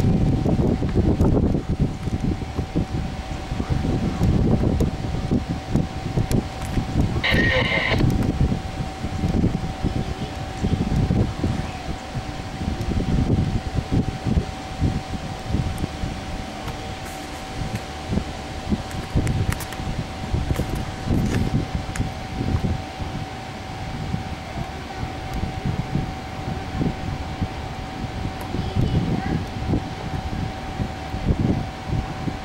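Wind buffeting the microphone over the low rumble of an approaching CN diesel freight locomotive, with a steady thin high tone throughout and a brief higher-pitched sound about seven seconds in.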